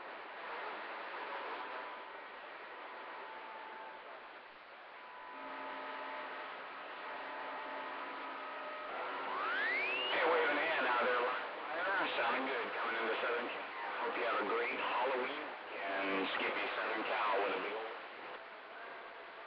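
CB radio receiver hissing with steady carrier tones, then a whistle rising in pitch about nine seconds in, followed by garbled, warbling voice coming through the radio.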